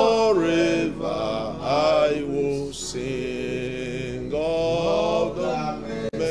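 A man's voice in slow devotional chanting, holding notes for about a second at a time and sliding between pitches, with no clear words.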